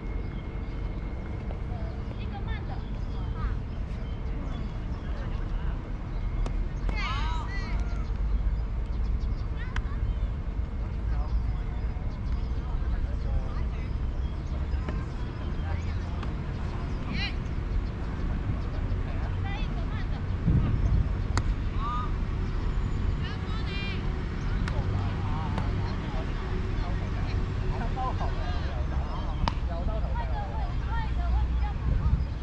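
Scattered distant voices of softball players calling out across an open field, over a steady low background rumble.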